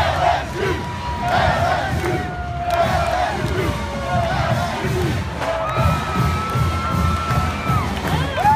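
Large dense crowd of football fans cheering, shouting and whooping, with a marching band playing faintly underneath.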